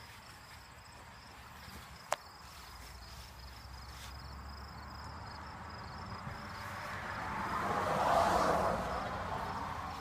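Insects chirping faintly in an even, repeating high trill. There is a single sharp click about two seconds in, and a broad rushing sound that swells to a peak near eight seconds and then fades.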